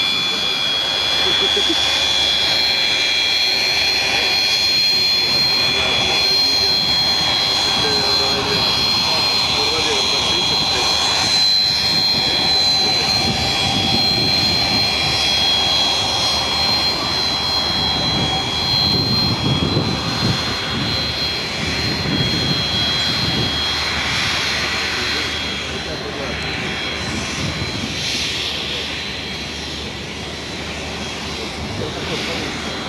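Beriev Be-200's two wing-mounted turbofan jet engines running as the amphibian taxis on the runway, with a steady high whine over the engine noise. The whine fades and the sound drops a little near the end.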